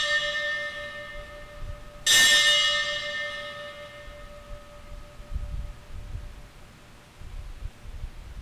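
A bell struck twice at the elevation of the consecrated host: the first stroke's ringing fades at the start, and a second stroke about two seconds in rings clearly and dies away over a few seconds. The ringing marks the moment the host is raised for the people to see.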